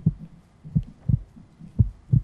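Heartbeat sound effect played as a suspense cue under a countdown: a steady run of short, low thumps, roughly two a second.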